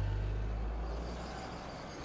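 Low engine rumble of a cartoon vehicle, fading steadily away.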